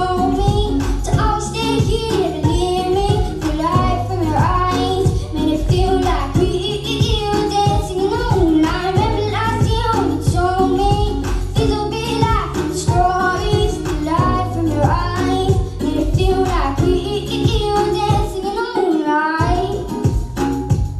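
A young girl singing a song into a handheld microphone over amplified backing music with a steady low bass pulse.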